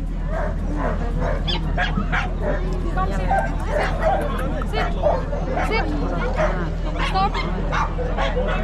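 A dog barking and yipping repeatedly in short calls, over crowd chatter and a steady low hum.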